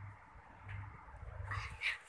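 Two brief high-pitched vocal sounds near the end, the second rising in pitch, over faint low background noise.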